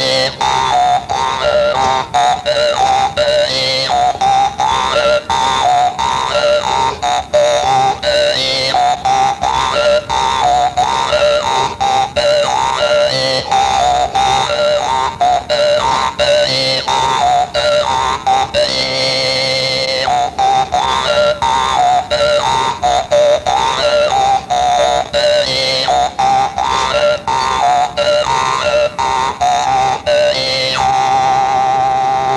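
Hmong jaw harp (ncas) played in quick, speech-like phrases over a steady low drone, its upper tones shifting with the mouth shape. There is a longer held note about nineteen seconds in.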